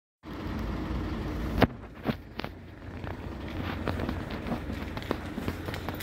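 Footsteps on brick paving, about two a second, over a low steady rumble of street traffic. A single sharp knock about a second and a half in is the loudest sound.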